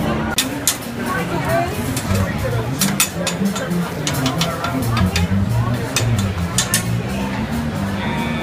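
Busy food-hall ambience: crowd chatter with many short, sharp clinks and clanks of kitchen clatter scattered throughout.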